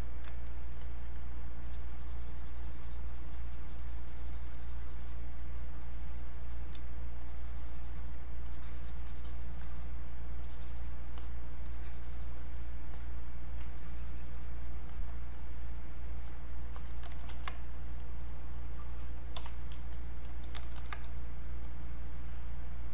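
Scattered light clicks and taps of a computer mouse and keyboard during desktop 3D-modelling work, with a few sharper clicks near the end, over a steady low hum.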